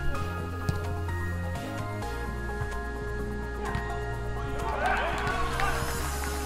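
Background music with a steady, deep bass line. Near the end, a burst of shouting voices rises over it.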